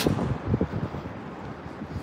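A minivan driving past close by, its tyre and engine noise fading as it moves off down the street, with wind on the microphone.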